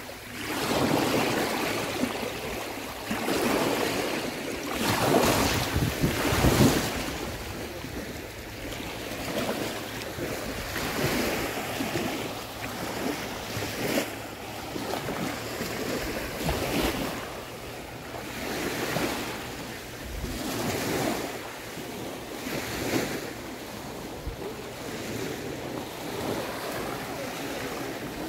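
Small waves washing in and out over sand at the water's edge, swelling and fading every couple of seconds, louder in the first several seconds, with wind on the microphone.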